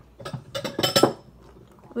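A bowl and cutlery clinking and clattering: a quick run of sharp, ringing clinks in the first half.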